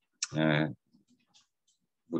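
A man's voice says one short syllable a quarter of a second in. A few faint clicks follow in otherwise near silence.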